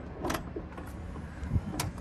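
Motorised power sliding door of a Mercedes Sprinter camper van closing on its own, pulling shut with a low thump and a sharp latch click near the end.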